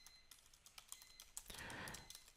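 Faint typing on a computer keyboard: irregular soft key clicks as a line of code is entered, with a brief soft hiss near the end.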